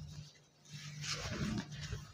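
Soft rustling of a silk saree being handled and spread out. It starts about half a second in after a brief hush.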